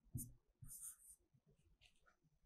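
Faint scratching of a stylus writing on an interactive whiteboard screen, in a few short strokes.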